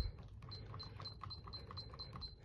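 Touchscreen thermostat beeping faintly, about four short high beeps a second, as its down arrow is held to step the set temperature lower.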